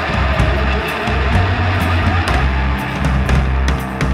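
Heavy psychedelic doom rock: distorted electric guitar over held bass notes and a drum kit, with cymbal hits keeping a steady beat.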